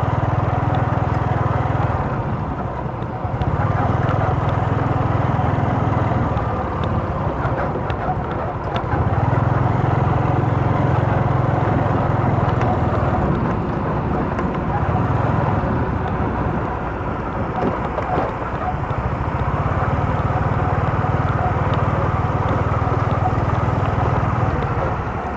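Motorcycle engine running steadily while riding over a rough dirt track, with a low rumble that swells and drops every few seconds.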